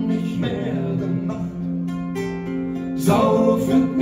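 Two acoustic guitars played live: a held chord rings on with a single plucked note about two seconds in, then a louder strummed chord comes in about three seconds in.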